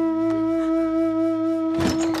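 Film background score: a single woodwind-like note held steadily over a low drone, with a sudden louder, noisier swell coming in near the end.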